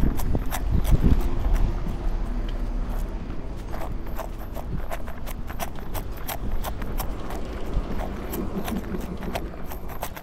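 Running shoes striking asphalt in a steady rhythm of sharp footfalls, with a low rumble in the first second or two.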